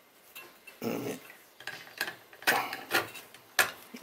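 Light clicks and metallic taps from hands working the metal clamp and its screws on a 3D-printer pellet extruder assembly, a few sharp ones spaced through the second half. There is also a brief low sound about a second in.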